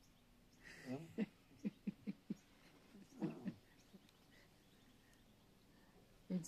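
A man's quiet voice in a few short sounds: a brief utterance about a second in, a quick run of about five short voiced pulses, then one more short sound near the middle.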